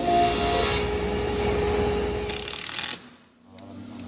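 Rough, rasping rubbing of an MDF board being worked at a saw table. It fades out about three seconds in.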